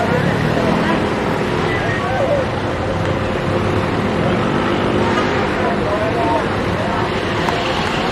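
Steady street traffic noise from cars passing and idling, with indistinct voices in the background.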